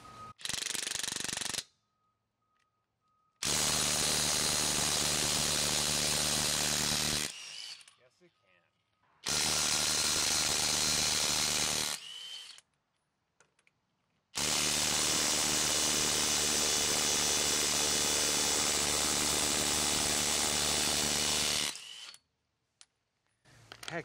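DeWalt DCF850 cordless impact driver hammering on a lug nut in four runs: a brief burst at the start, then runs of about four, three and seven seconds with pauses between them. It is trying to break loose lug nuts torqued to about 150 foot-pounds.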